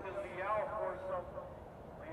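A faint voice without clear words for about the first second, then a low, steady background.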